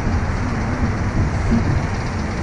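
Steady low rumble of wind on the microphone of a camera mounted on a reverse-bungee ride capsule as the capsule is lowered toward the ground.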